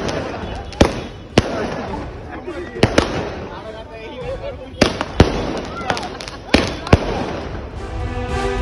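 A hand-held multi-shot firework box firing, with about eight sharp, irregularly spaced bangs over a steady hiss of sparks. Voices of onlookers can be heard in the background.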